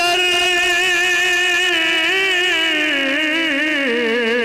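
A man singing a naat into a microphone, holding one long, wavering note that slides down to a lower pitch near the end.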